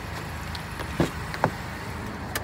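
Two short clicks, about a second in and again just under half a second later, as a pickup truck's rear door latch is released and the door pulled open, over a steady low hum.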